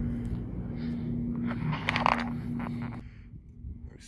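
Footsteps scraping and clicking on a concrete path strewn with debris and broken glass, over a low outdoor rumble and a faint steady hum. The sound drops away suddenly about three seconds in.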